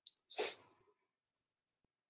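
A single short, breathy burst of air from a person, about half a second in, preceded by a faint click.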